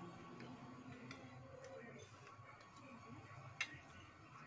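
Quiet eating sounds: a metal spoon ticking lightly against a plate, with one sharp clink a little before the end as the spoon is laid down in the plate.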